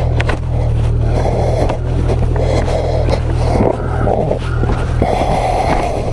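Ski-Doo two-stroke E-TEC snowmobile engine running steadily at a low, even pitch while the sled creeps over packed snow, with a hiss from the track and snow.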